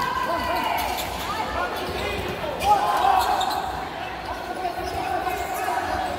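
Sounds of a futsal game on an indoor court: sneakers squeaking and the ball being struck, with players shouting. The sharpest and loudest hit comes about two and a half seconds in.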